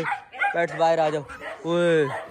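A man's voice calling out to coax animals out of their cage: a few short calls, then one long drawn-out call near the end.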